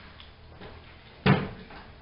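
A door shutting with a single sudden thud a little over a second in.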